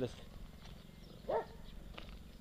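A dog barks once, briefly, about a second into a pause in the talk, over a faint steady low hum.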